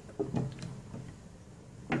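Glass cooking-pot lid set down onto a pot of simmering curry: a brief soft clatter in the first half-second, then quiet.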